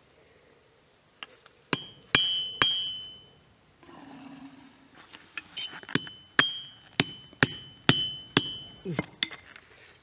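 Hammer blows on a liquid-nitrogen-chilled copper pipe laid on a steel anvil. Three strikes come about two seconds in, then a run of about seven more from the middle on, each with a brief metallic ring. The cold copper bends under the blows instead of shattering.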